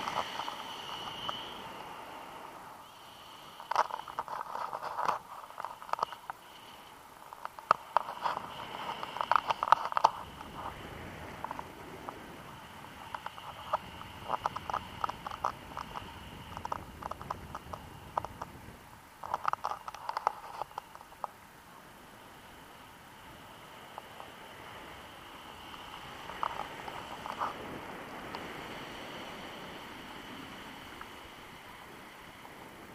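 Irregular bursts of rapid crackling ticks over a faint steady hiss. This is handling and wind noise picked up by an action camera carried on a paraglider in flight.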